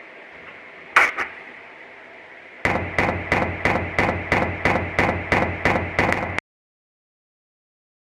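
Two sharp knocks on a door about a second in, then loud, rapid banging on it, about three blows a second for nearly four seconds, which cuts off suddenly.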